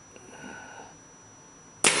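MacDev Clone paintball marker firing a single shot near the end: a sharp crack that dies away quickly.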